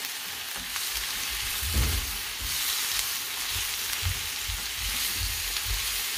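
Prawns and shredded cabbage, carrot and onion sizzling in a wok while a spatula stirs them, with occasional low knocks of the spatula against the pan.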